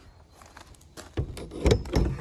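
Enclosed cargo trailer side door's metal bar latch being worked by hand: a few sharp metal clanks and rattles starting a little over a second in, loudest near the end.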